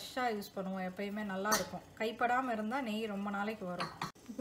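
A woman talking throughout, with one brief metal clink of a utensil against a stainless-steel saucepan about a second and a half in.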